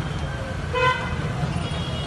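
A single short vehicle horn toot a little under a second in, over steady street noise.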